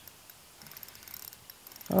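Spinning reel giving faint, rapid clicking while a hooked trout is played on the bent rod.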